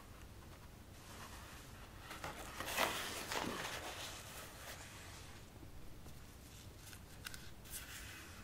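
Rustle of a large sheet of watercolour paper being lifted and turned to show the next painting, lasting about two seconds, followed by a few light taps near the end.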